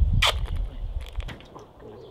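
Gaffer tape being pulled off the roll and wrapped round a sensor cable: a short ripping sound about a quarter second in, over a low rumble that dies away about halfway through.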